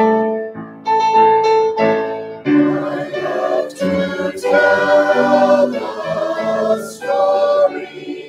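Mixed church choir of men's and women's voices singing a hymn in parts, in sustained phrases with short breaks between them.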